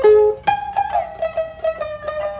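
Shamisen and koto playing a jiuta passage together: quick plucked notes with some bent pitches. A sharp accent comes at the start and another about half a second in.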